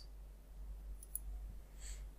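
Faint computer mouse clicks, two short high ticks about a second in, over a low steady hum.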